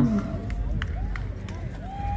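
Outdoor background noise: a low steady rumble with faint distant voices and a few light clicks.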